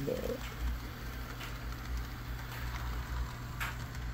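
Model freight train running on the layout: a steady low motor hum, with a few faint clicks from the wheels on the track. The locomotive is running nicely.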